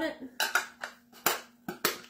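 Black plastic parts of a three-in-one burger press clicking and knocking against each other as the top is fitted on: several short sharp clicks, the loudest about a second in and near the end.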